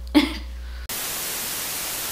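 A brief vocal sound, then about a second in a steady hiss of TV-static white noise cuts in abruptly as an editing transition.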